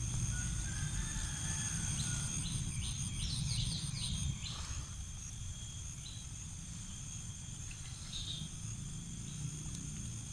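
Rice-paddy ambience: steady high-pitched insect trilling throughout, with a short run of quick chirps about three to four seconds in, over a low rumble.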